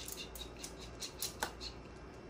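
Mini chocolate chips and mini marshmallows rattling inside a sugar cone as it is shaken to settle them: a run of small, light clicks, the loudest about one and a half seconds in.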